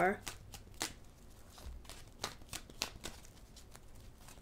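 A tarot deck being shuffled by hand: a quiet string of irregular card clicks and slaps.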